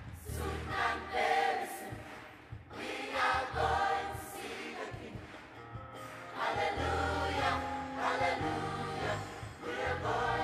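A large children's choir singing a gospel song, the voices coming in phrases that swell and fall back.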